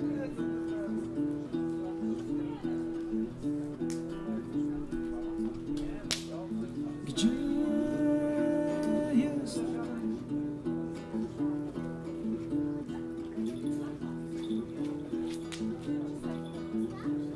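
Acoustic guitar played fingerstyle, a repeating pattern of plucked notes forming the instrumental introduction to a song.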